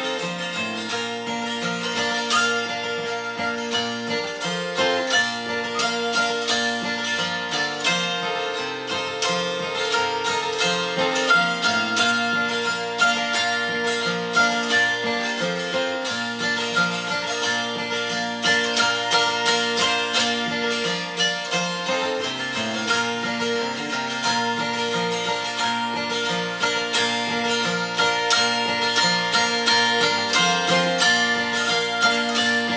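Mountain dulcimer in BbFF tuning playing a hymn melody in B-flat over its ringing drone strings, accompanied by a strummed acoustic guitar.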